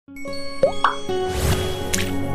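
Electronic intro jingle with cartoon pop sound effects. Sustained synth notes start right away, two quick rising pops come about two-thirds of a second in, a whoosh follows around a second and a half, and a sharp click comes near the end as the music carries on.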